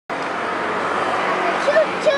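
Steady city traffic noise with distant voices mixed in; a few voices stand out near the end.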